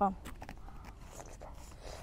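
A few faint ticks, then near the end a bite into a crisp milk-white wax apple (mận trắng sữa).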